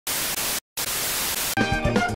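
Television static: a steady hiss of white noise, cut off for a moment about half a second in, then resuming. Near the end it gives way to music with a bass line and drums.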